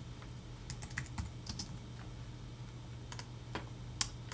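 Typing on a computer keyboard: a quick run of keystrokes in the first second and a half, then a few single clicks later on, over a low steady hum.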